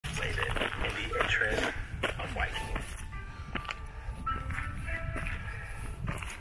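A voice and music together, with a few held steady notes in the middle, over a steady low rumble.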